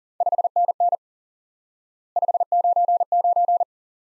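Morse code sent as a keyed sidetone at 40 words per minute: a single steady mid-pitched tone in short and long beeps, in two groups about a second apart. The groups spell '5NN' and then '599', the cut-number and full forms of a signal report.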